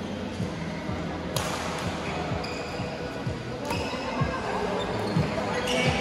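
Badminton rackets striking a shuttlecock, with sharp hits about a second and a half in and again near four seconds and a cluster near the end, over a steady hall background of voices and footfalls on the court.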